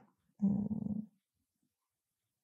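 A woman's short, closed-mouth hum of hesitation ("mmm"), held at one pitch for under a second, about half a second in.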